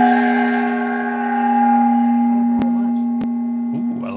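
A gong, struck just before, rings on with a strong low hum and bright higher overtones. It swells slightly about a second and a half in and then slowly fades. The hit marks a new bid in the auction, and two faint clicks come near the end.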